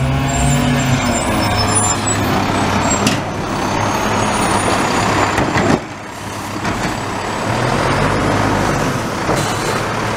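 Automated side-loader recycling truck pulling up to the curb, its diesel engine running with an air-brake hiss that cuts off suddenly about six seconds in. Its hydraulic arm then grips and lifts the recycling cart toward the hopper as the engine comes up again.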